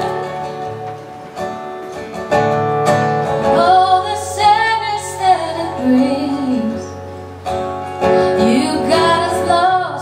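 A woman singing with a strummed acoustic guitar. The guitar chords ring alone for the first few seconds, and the sung line comes in about three and a half seconds in.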